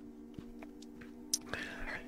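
A quiet pause with a steady low hum, a couple of faint clicks, and a short breath-like hiss into a close microphone near the end.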